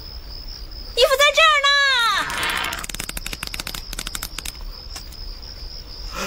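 A high voice calls out with falling pitch, then a rapid, irregular run of sharp clicks lasts about three seconds, over a steady high insect chirring.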